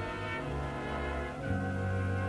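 High school big-band jazz ensemble playing a slow ballad: brass holding sustained chords over a bass line that moves to a new note about half a second in and again near a second and a half.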